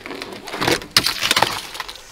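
A thick sheet of ice from freezing rain crackling and snapping as it is handled and broken by hand: an irregular run of sharp cracks and glassy clinks, loudest about a second in.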